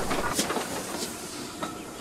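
A train running past, a steady rushing noise with a few faint rail-joint clicks, fading away.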